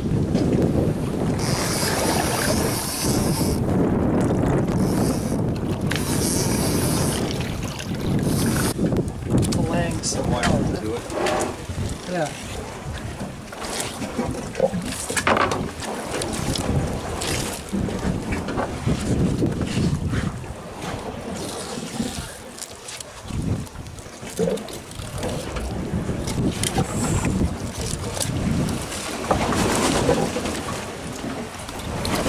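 Wind rumbling on the microphone over water sloshing against the side of a boat, with two brief hissy splashes in the first several seconds. Later come scattered knocks and slaps as fish are handled on the boat's cleaning table.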